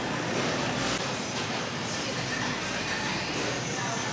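Steady supermarket background noise with faint music playing.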